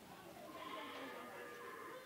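A faint bleating animal call, held for over a second and wavering in pitch, in the background.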